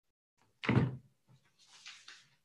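A single short, sudden thump about half a second in, followed by faint small knocks.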